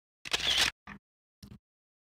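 An iPad's camera shutter sound as a photo is taken, about a quarter second in, followed by two faint short clicks.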